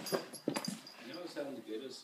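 A dog whimpering briefly, mixed with quiet voices and a couple of light knocks.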